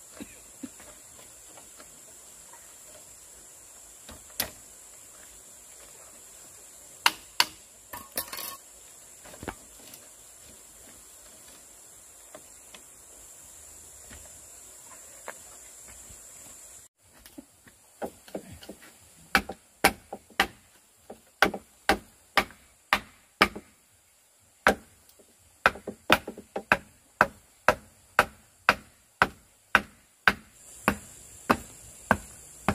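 A steady high insect drone with a few scattered clacks as a bamboo lattice panel is handled. In the second half come repeated sharp knocks on bamboo, about two a second, as a bamboo fence post is set and struck at its base.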